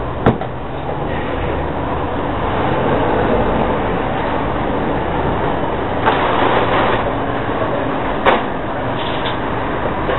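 Handheld hair dryer blowing steadily, used to dry liquid latex aging makeup on a face, with a couple of brief knocks.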